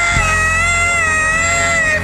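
A gospel singer holds one long, high sung note that wavers slightly in pitch, over a steady, low sustained musical accompaniment.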